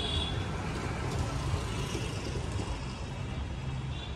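A low, steady rumble of road traffic, with a motor scooter riding along the lane.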